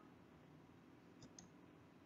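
Near silence: faint room tone with two small clicks about a second and a quarter in.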